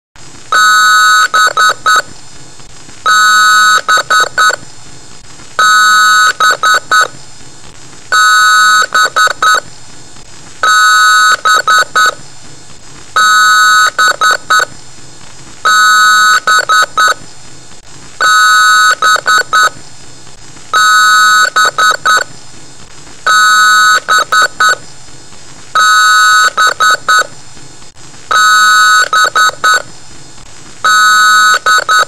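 Loud electronic alarm-like beeping that repeats about every two and a half seconds. Each round is a long beep followed by a few short, stuttering beeps.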